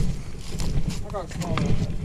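Wind buffeting the action-camera microphone, a steady low rumble, with footsteps on riprap rock and a faint voice briefly past the middle.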